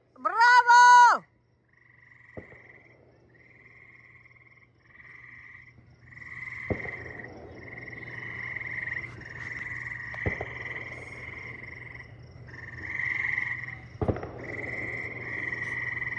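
A rooster crows once at the start, one loud call that rises, holds and falls. Then a chorus of trilling frogs builds in pulsed stretches that grow longer and louder. Three sharp bangs come through the chorus, at roughly three-to-four-second intervals.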